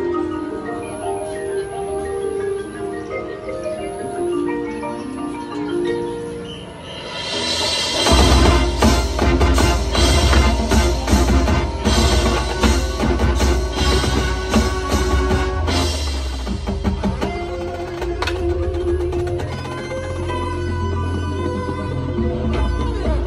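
Marching band playing: for the first seven seconds the front ensemble's mallet keyboards carry a soft, sustained passage, then about eight seconds in the full band with brass and drums comes in loudly. It eases back somewhat after about sixteen seconds while the band keeps playing.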